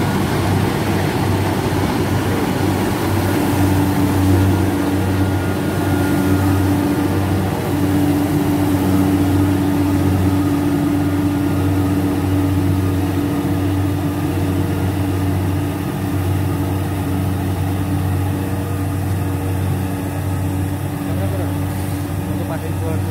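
Engine of a paddy-harvesting (dhan kata) machine running steadily with a low, even hum; a steady higher tone joins in about three seconds in and fades out after about fifteen seconds.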